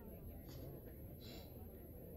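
Quiet room tone with a steady low rumble, broken by two brief soft hisses about half a second and a second and a quarter in.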